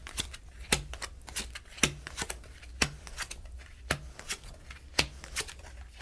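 Kipper fortune-telling cards being dealt one at a time onto a lace-covered table, each laid down with a light snap about once a second, with softer card rustles in between.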